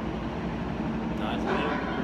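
Steady low rumbling noise, with faint murmured voices about a second and a half in.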